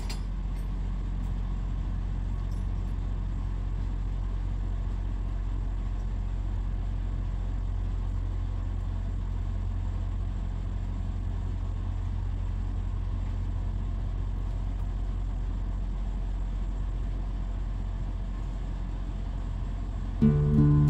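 Semi-truck diesel engine idling steadily, a low even rumble, with a few faint metallic clicks in the first few seconds.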